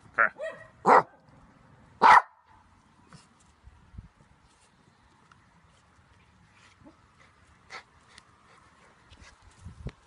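Small terrier barking while playing tug with a rope toy: a few short, loud barks in the first two seconds, then only faint small sounds, with one softer bark-like sound late on.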